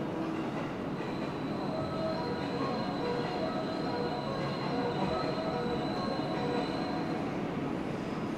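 JR West 117 series 7000 'WEST EXPRESS Ginga' electric train approaching the platform, with a steady rumble and a thin high wheel squeal from about a second and a half in until near the end. A station melody of short notes plays under it.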